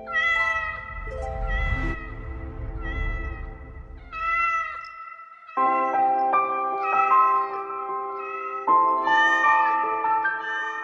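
Cat meows set to music: a string of pitched meow calls, one every second or two, over a sustained musical backing.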